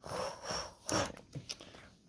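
Quiet handling noise: soft rustling with a few small clicks as a chrome baseball card is held and turned in the hands.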